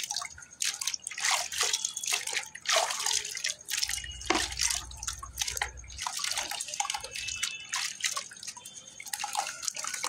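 Wet lumps of geru (red ochre clay) and sand squeezed and crumbled by hand in a bucket of muddy water, with irregular drips and splashes as water runs off the clay and the hands work under the surface.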